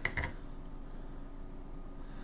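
Two quick clicks of a knife being handled right at the start, then quiet room tone with a faint steady hum.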